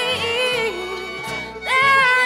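Bluegrass string band playing live: a held melody line wavers, then swoops up into a long note near the end, over upright bass notes changing about twice a second.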